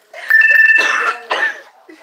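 A woman's loud, breathless fit of laughter breaking into coughing, with a high whistling wheeze through the first and longer burst and a second short burst after it.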